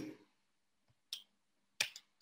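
Two short, sharp clicks in an otherwise quiet room: a faint one about a second in and a louder one near the end.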